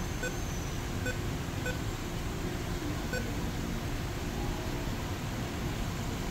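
A few faint, short beeps, four in the first three seconds or so: touchscreen key tones from the Android car head unit as its screen is tapped. They sit over a steady background hum.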